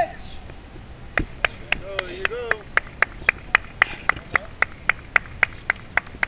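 Sharp claps in a fast, even rhythm, about four a second, starting about a second in, with a brief shout around two seconds in.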